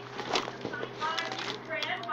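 Small plastic toy figures dumped out onto carpet, a brief cluster of light clatters and clicks about a third of a second in.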